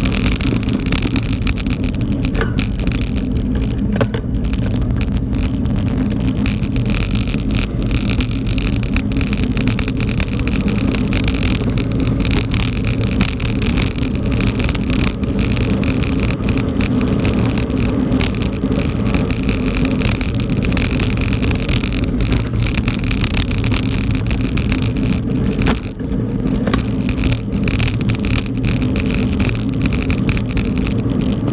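Mountain bike riding over a dirt road, heard from a camera mounted on the bike: a loud, steady rumble of tyres on the rough surface with frequent small rattles and knocks.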